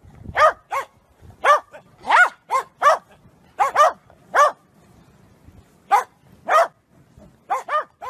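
Corgi barking repeatedly in short, high-pitched barks, about a dozen in irregular bunches, with a pause of a second or so about halfway through.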